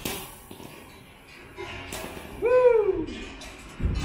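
A stack of four balls on a guide rod hits the floor with a sharp knock, and a second knock follows about two seconds later. Then comes a short rising-and-falling "whoo" from a man's voice.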